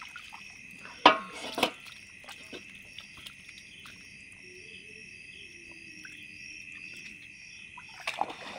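Night chorus of insects and frogs: a steady high trill with a pulsing call repeating about twice a second. About a second in come two sharp splashing clatters, as the wet sieve net is emptied of small fish into an aluminium bowl.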